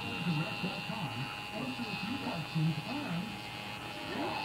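Electric tattoo machine buzzing steadily as it works on skin, under low background talk.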